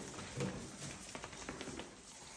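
Bullmastiff puppies moving about in shredded-paper bedding: quiet rustling with scattered small clicks and taps, and one brief low grunt about half a second in.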